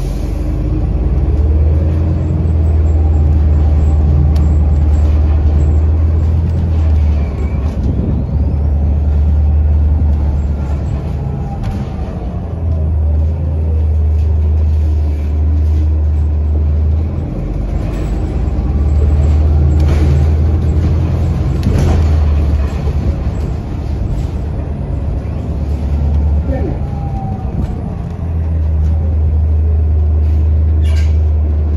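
A city transit bus heard from inside while riding: a deep engine and drivetrain drone that swells and drops back every few seconds as the bus pulls and eases off, with faint whines that glide up and down in pitch.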